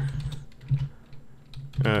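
Keystrokes on a computer keyboard: a handful of light, separate key clicks as text is typed.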